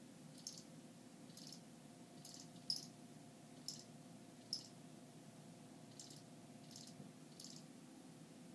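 A young field cricket chirping faintly in short, single chirps, about nine of them at irregular gaps of roughly a second: a cricket that has only just begun to call.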